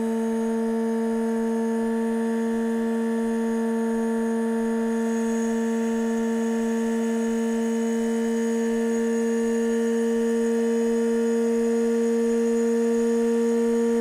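Electric starter motor running flat out on a PWM controller at about 14,000 rpm: a steady, high, even hum that holds its pitch and grows slightly louder toward the end. The motor is running warm under this full-speed run.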